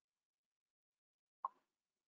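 A single short, sharp click about one and a half seconds in, otherwise near silence.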